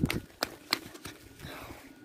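A few sharp knocks or clicks in the first second, then faint background.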